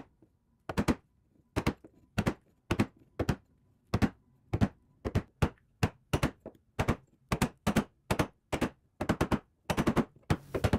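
A wooden caulking mallet striking a caulking iron, driving cotton into the plank seams of a wooden boat hull: a steady rhythm of sharp knocks, about two to three a second, many of them in quick pairs.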